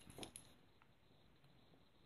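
Near silence, with a few faint clicks in the first half second as the small metal atomizer deck and screwdriver are handled.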